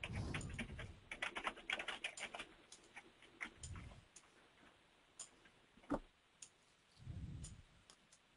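Faint typing on a computer keyboard: a quick run of key clicks in the first couple of seconds, then scattered single keystrokes, with one sharper click about six seconds in.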